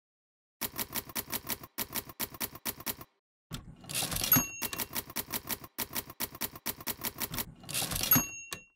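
Manual typewriter keys clacking in quick runs of about six strokes a second, broken by short pauses. About halfway through, a carriage-return sweep ends in a single ring of the bell, then the typing resumes, and another carriage-return sweep starts near the end.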